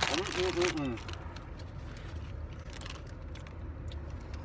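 A man makes a short, falling vocal sound in the first second, then chews a taco with faint crunches over the steady low rumble of a car cabin.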